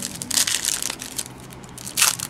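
Foil trading-card pack wrapper crinkling as hands open it, loudest about half a second in.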